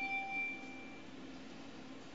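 A single handbell note ringing and dying away, fading out about a second in, leaving faint room tone.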